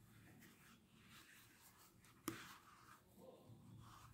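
Near silence with the faint rustle and scratch of yarn being drawn through an EVA sole with a crochet hook, and one sharp click a little past halfway.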